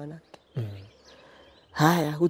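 Speech with a short pause: a word ends, a brief low murmur follows, then talking resumes loudly near the end. During the quiet gap there are faint high bird chirps.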